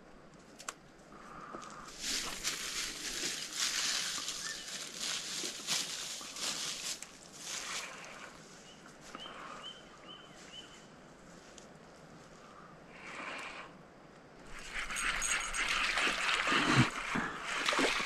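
A hooked largemouth bass splashing and thrashing at the pond surface in the last few seconds, the water sloshing. Earlier, a stretch of hissy rustling and a bird chirping four short notes.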